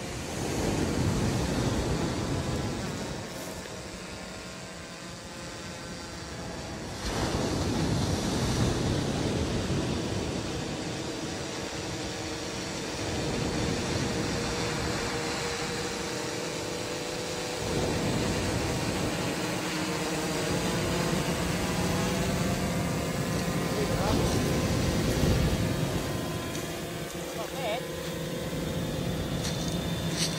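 Wind buffeting the microphone over the steady hum of a quadcopter fishing drone's propellers. The hum grows stronger near the end as the drone comes down low to land.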